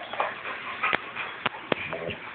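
A dog whimpering in short, brief cries, with a few sharp clicks about a second in.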